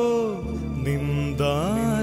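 Slow introduction of a Tamil Catholic Lenten hymn: a sustained melody line holds a note, slides down early on, then glides up to a new held note over a steady low bass note.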